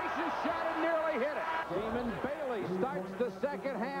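Male television commentators talking over background crowd noise in a basketball arena.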